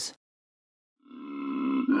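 A koala's bellow fades in about a second in: a low, steady, drawn-out call, with a brief break near the end.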